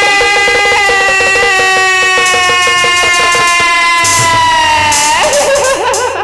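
A jatra singer holds one long note for about five seconds, its pitch slowly sinking, over quick percussion ticks in the first half. Near the end the note breaks into a wavering upward turn.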